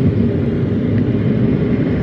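Steady rumble of road and engine noise inside a moving car's cabin.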